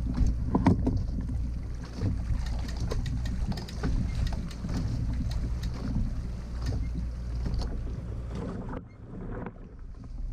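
Water sloshing and splashing around a fishing kayak as a person wades beside it in shallow water, with scattered knocks and clicks from the hull and gear over a low, steady wind rumble on the microphone.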